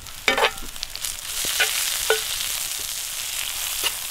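Sliced fennel sizzling in oil in a cast iron skillet over a campfire, stirred with a metal slotted spoon. A few sharp clicks of the spoon against the pan break through the steady sizzle.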